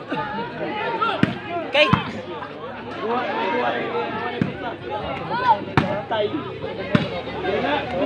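Crowd of spectators talking and calling out, with several sharp smacks of the ball being struck during a rally.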